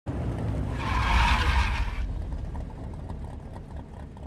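A car engine rumbling low, with a loud screech of tyres skidding for about a second near the start.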